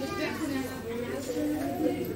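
Indistinct voices of people talking in a shop.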